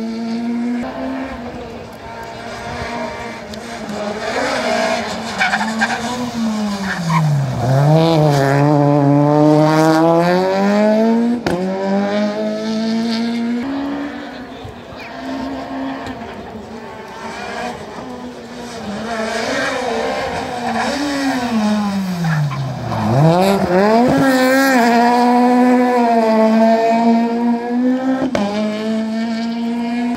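Rally car engine running hard on a stage: the engine note drops sharply as the car slows for a tight bend, then climbs again as it accelerates away. This happens twice, about 8 and 23 seconds in.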